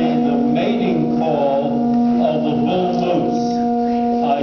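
Organ pipe blown with sulfur hexafluoride gas from a balloon, sounding one steady low tone; the dense gas lowers the pipe's pitch.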